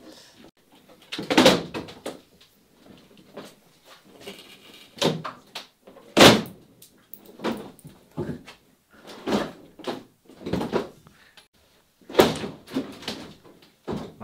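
Wooden knocks and cracks, about ten of them at irregular intervals with the loudest about six seconds in, as a glued-up wooden boat hull is worked loose from its building jig where the glue had stuck it to the stringers.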